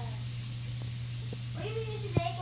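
A steady low hum with a few faint clicks. Near the end comes a short vocal call that rises and then falls in pitch.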